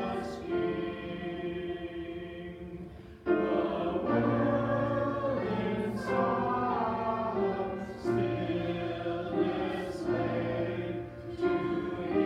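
Congregation singing a Christmas carol hymn with instrumental accompaniment, in long held notes, with a short break between lines about three seconds in.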